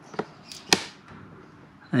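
Two sharp clicks, one about a fifth of a second in and a louder one near the middle of the first second, as the drain plug is pulled free of the Honda CB125E's sump. Warm engine oil then starts pouring into a plastic drain tray.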